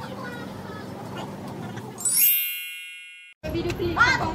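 A bright chime sound effect strikes about halfway through and rings out, fading over about a second as the background sound drops away, over low shop ambience with faint voices before it.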